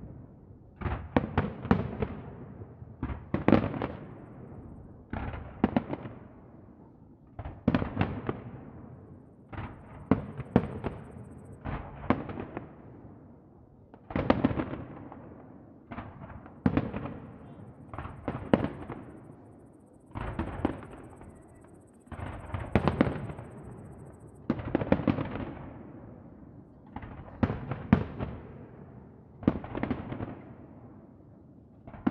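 Aerial fireworks bursting overhead: a bang or a quick cluster of bangs about every two seconds, each one echoing and dying away before the next.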